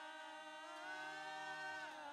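Worship team of women singers with a male leader singing softly in long held notes. The top voice rises to a sustained high note about a second in and falls away just before the end.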